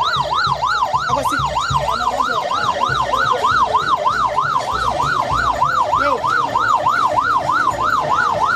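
Electronic emergency-vehicle siren in a fast yelp, its pitch sweeping up and down about three to four times a second without a break.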